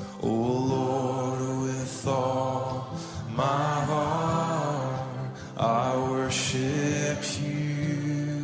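Slow worship song: a voice sings four long, drawn-out phrases over sustained low instrumental chords.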